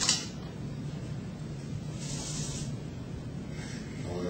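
Dry-erase marker or eraser rubbing on a white dry-erase board: a short click at the start, then a brief scratchy rubbing about two seconds in, over a steady low room hum.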